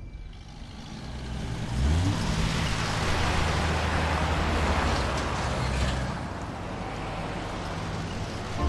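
Open military jeep's engine running as it drives past, with a short rise in revs about two seconds in. It is loudest in the middle and eases off after about six seconds.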